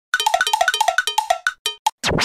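A cartoon-style intro sound effect: a fast run of short, bell-like pitched blips that spaces out and stops.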